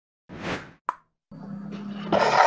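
A short soft pop about a third of a second in, then a single sharp click just before one second. After that a faint steady low hum comes in, the room tone of the video-call audio.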